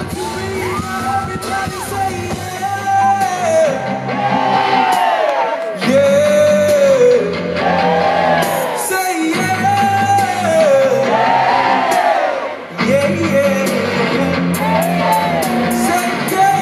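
Live R&B/pop band playing through a festival PA with a male lead singer singing a melodic line; the bass and drums drop out for a few seconds near the start and briefly twice more.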